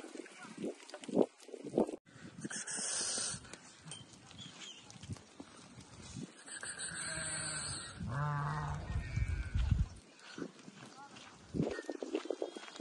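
A flock of Harri sheep bleating, with one drawn-out, wavering bleat about eight seconds in.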